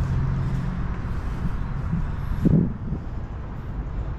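Road traffic noise: a steady vehicle engine hum fades out about a second in, over a constant wash of road and wind noise, with one brief low sound about halfway through.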